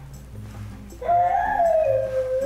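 A dog howling: one long, high howl begins about a second in and wavers slowly in pitch, over soft background music.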